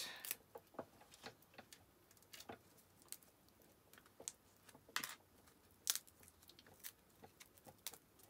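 Faint, scattered clicks and light rustles of thin metal cutting dies and die-cut card being handled as stuck die-cut pieces are worked out of the dies.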